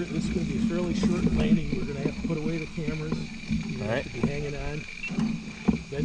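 People talking, their words indistinct. A faint steady high tone runs underneath.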